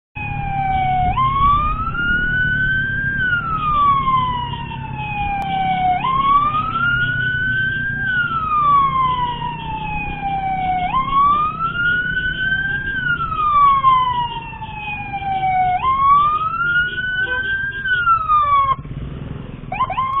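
Electronic emergency siren in a slow wail, its pitch rising for about two seconds and falling for about three, repeating every five seconds and cutting off near the end. A steady low rumble of engine and traffic runs underneath.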